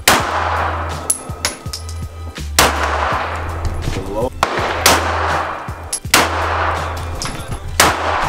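Semi-automatic pistol shots, about four loud ones unevenly spaced a second or two apart plus a few smaller cracks, each trailing off in echo. A low steady music bed runs underneath.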